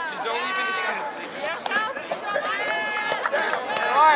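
Spectators shouting and cheering on runners, several loud, high-pitched voices yelling over one another.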